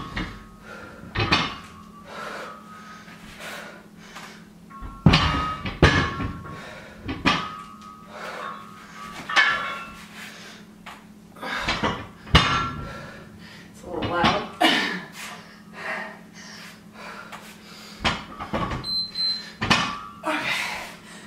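Loaded barbell's iron plates knocking and clinking through repeated deadlifts: a sharp knock about every one to two seconds, some with a brief metallic ring.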